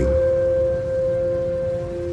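Background music: a steady drone of a few held notes, two of them strongest, unchanging.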